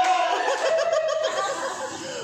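Laughter: a voice laughing in a quick run of short ha-has that eases off toward the end.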